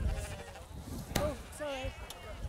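Icelandic sheep bleating: one long wavering bleat of about a second, then a shorter bleat near the end. A sharp knock sounds about a second in.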